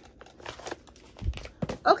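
A mail package being unwrapped by hand: scattered rustling and crinkling of its wrapping, with a soft thump a little after halfway.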